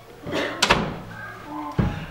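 A sharp knock under a second in, then a dull, low thump near the end.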